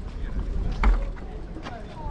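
Wind buffeting the microphone in a low, uneven rumble that eases off after the first second, over faint voices of people nearby. A short sharp knock comes just under a second in.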